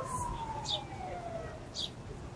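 A wailing siren: a single tone that climbs quickly, then sinks slowly over about a second and a half before climbing again. A couple of short, high bird chirps come over it.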